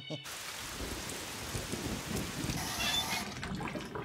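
Water rushing in a washroom, starting suddenly just after the start and dying away about three seconds later.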